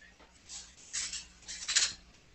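Small objects being handled on a table: three short scraping, clattering noises, the last and loudest near the end.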